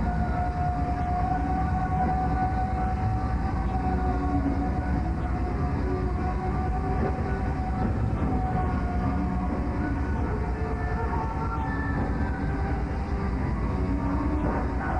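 Metal band playing live: long held notes over a dense, heavy low end.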